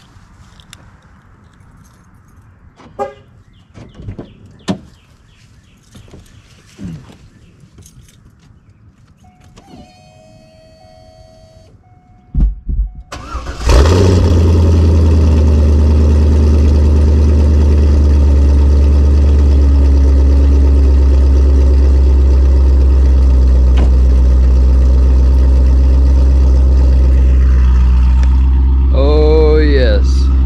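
Cold start of a Chevrolet C5 Corvette's 5.7-litre V8: after a few quiet clicks, the starter cranks briefly about 13 seconds in and the engine catches, then runs at a loud, steady idle.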